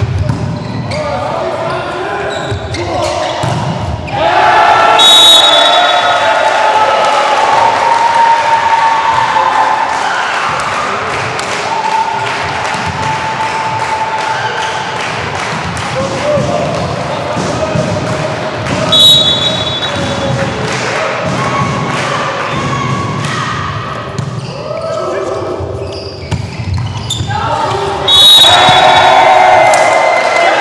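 Indoor volleyball rally in a sports hall: the ball being struck and thudding under a loud bed of spectators shouting and cheering, which swells sharply about four seconds in and surges again near the end as the point is won. A few short shrill sounds cut through the crowd noise, the loudest near the end.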